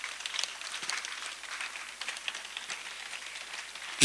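Faint steady background hiss with scattered light ticks and crackles.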